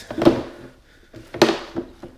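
Two short knocks about a second apart as a slotted steel brake rotor is handled against the rim of a plastic wash tub.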